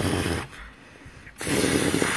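Raspy, breathy vocal noise made in the throat, in two bursts: a short one at the start and a longer one about a second and a half in.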